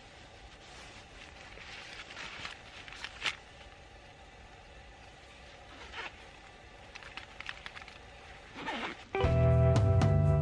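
Faint rustling and a few small sharp clicks of outdoor gear being handled. About nine seconds in, loud background music with a steady bass comes in and becomes the loudest sound.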